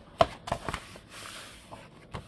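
Pages of a softcover coloring book being handled and turned. There is a sharp tap about a fifth of a second in, then two lighter clicks, then a soft rustle of paper sliding under the hand.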